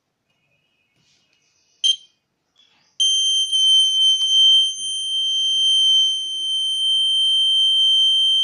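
Piezo buzzer on an Arduino baby-monitor board sounding its alarm: a short chirp about two seconds in, then a steady, high-pitched continuous tone that starts abruptly about three seconds in. The alarm marks that the circuit has detected a baby's cry.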